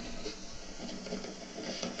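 Livescribe smartpen nib scratching across paper as a word is written, picked up close by the pen's own microphone.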